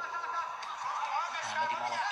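Speech: a man's sports commentary, with a drawn-out hesitation ("e, ama") near the end.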